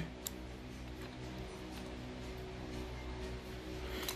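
A low, steady hum held on several unchanging tones, with a faint click about a quarter second in.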